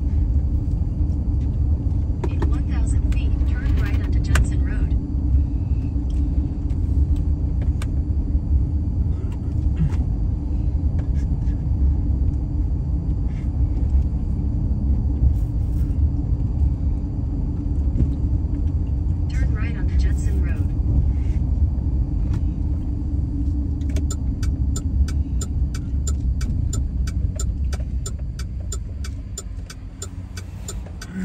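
Road noise heard from inside a moving car: a steady low rumble of engine and tyres at town speed. Near the end a quick, regular ticking comes in while the rumble eases off as the car slows.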